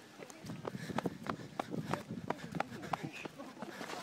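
Running footsteps, about three a second, with faint voices in the background.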